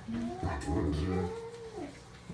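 Adult Great Dane giving a long, whining moan, starting about half a second in, its pitch arching and then falling away near the end: a jealous protest at a puppy being held.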